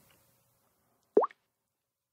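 A single short smartphone interface tone about a second in: a quick plop that sweeps upward in pitch, as the Samsung Galaxy S4's touchscreen button is tapped.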